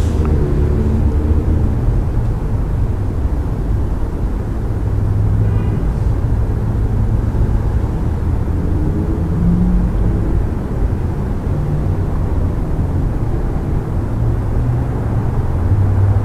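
Steady low rumble with faint humming tones that swell and fade, and a faint tick about six seconds in.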